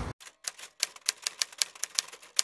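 Typewriter keys clacking, used as a sound effect: a quick, uneven run of sharp clicks, about six a second.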